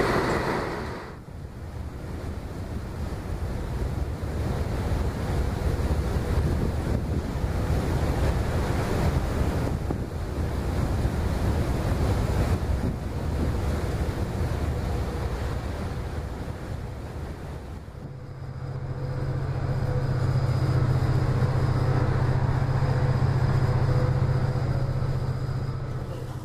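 Wind buffeting the microphone over the rush of water from a boat's wake, with a low rumble underneath. About 18 seconds in it gives way to a steadier, louder low drone with a faint thin tone above it.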